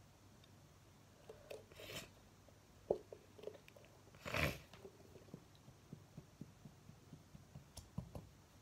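Plastic squeeze bottle of thick glue being squeezed by hand, with faint squelching and crackling and scattered small clicks as the glue comes out into a plastic container. The loudest moment is a short burst about four and a half seconds in.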